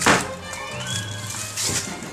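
A hammer strikes a nail once, sharply, right at the start, with background music running underneath and a softer knock near the end.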